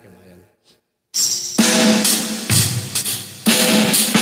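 A recorded backing track begins about a second in with a drum-kit intro of snare and bass-drum hits, loud and full.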